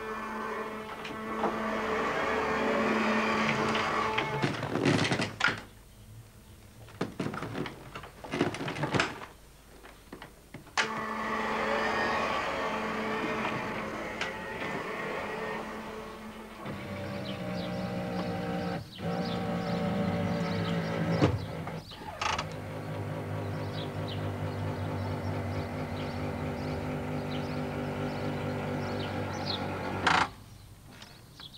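A powered wheelchair's electric motors whirring in two spells, with sharp clicks and knocks between them. Past the middle they give way to a steadier, even hum.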